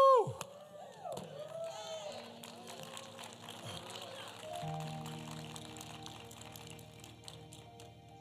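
A man's loud held "woo!" shout ends just after the start, followed by a few scattered voices from the congregation. About two seconds in, a keyboard begins holding sustained chords, which fill out near the halfway point and carry on.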